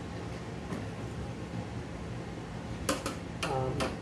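Screwdriver tightening the motherboard screws in a metal server chassis: a low steady hum for about three seconds, then a quick cluster of four or five sharp metallic clicks near the end, with a brief voice sound among them.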